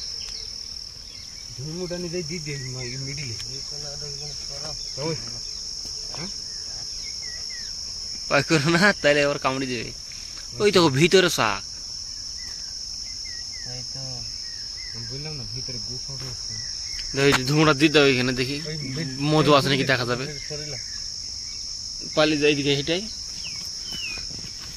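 Insects trilling in a steady, high-pitched chorus throughout, with people's voices talking in several short stretches, loudest around a third of the way in.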